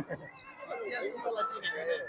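Faint background voices of a street crowd, with a brief short voice-like sound right at the start.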